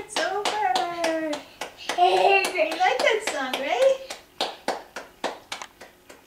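A young child's high voice calling out in sliding, wordless tones, over a run of hand claps. The voice stops about two thirds of the way through and the claps carry on alone, about three a second.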